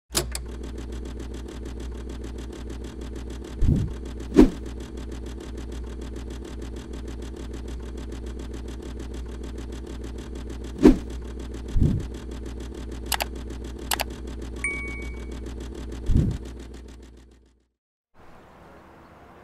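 Added sound effects: a steady mechanical hum with scattered sharp clicks and a few heavier thuds, and a single bell-like ding about fifteen seconds in. The hum fades out just before the end.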